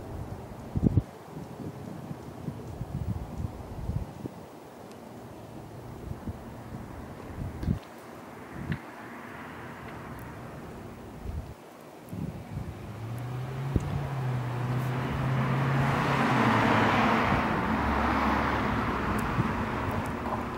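Outdoor background with wind on the microphone and a few scattered knocks. Over the last several seconds a passing car builds up, a broad rush with a low engine hum, loudest a few seconds before the end.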